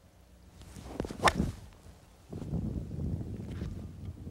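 Golf club swung through a full shot off a tee: a swish on the downswing, then one sharp crack as the clubface strikes the ball about a second and a quarter in. Footsteps on grass follow as a low rustle.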